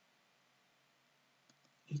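Near silence: room tone, broken by two faint ticks about a second and a half in, with a man's voice starting right at the end.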